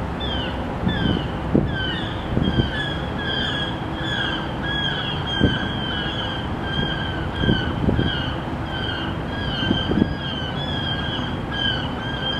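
A bird's short, high, downward-slurred call repeated about two or three times a second without a break, over a steady background rumble with a few low thumps.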